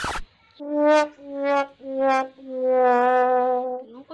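Sad trombone sound effect: four brass notes stepping down in pitch, 'wah wah wah waaah', the last one held long. A short burst of noise comes at the very start.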